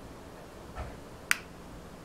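Fingers working at the plastic body of a small action camera while trying to pry open its battery cover: a soft rub, then one sharp click a little over a second in.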